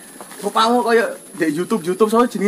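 A man talking: two short spoken phrases.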